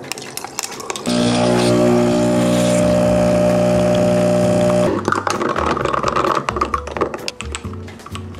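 Espresso machine pump buzzing steadily for about four seconds while a shot is pulled, starting abruptly about a second in and cutting off near five seconds; a few light clicks and knocks follow.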